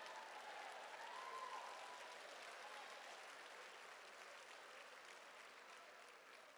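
Audience applauding, faint and slowly dying away.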